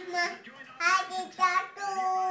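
A young child's high-pitched voice in short sing-song bursts, ending on one long drawn-out note.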